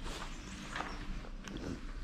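A few soft footsteps on a dusty floor, over a faint low rumble.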